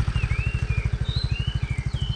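A motor scooter's engine idling steadily, a rapid even low pulsing, with short high bird chirps over it.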